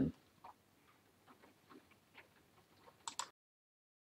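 Faint, scattered ticks and clicks, with a sharper double click about three seconds in.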